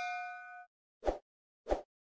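Fading ring of a notification-bell 'ding' sound effect from a subscribe-button animation, dying away within the first second. Then two short pops about two-thirds of a second apart, as more icons pop up.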